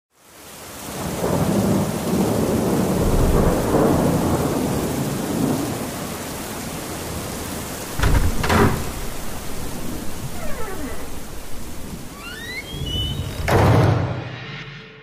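Thunderstorm sound effect: steady rain with rolling thunder that fades in over the first second, a sharp thunderclap about eight seconds in, and another rumble swelling near the end.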